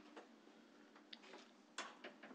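Near silence: hearing-room tone with a few faint, scattered clicks and taps, the most distinct near the end.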